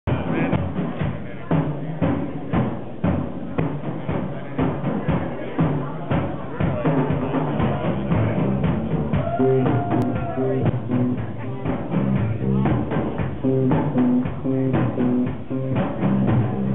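Live rock band playing a low, heavy bass-guitar riff over a steady drum-kit beat, the dull-sounding amateur recording of a club gig.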